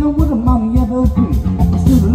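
A rock and roll band playing live: electric guitar, bass and drum kit, with a cymbal beat about four times a second, and a man singing.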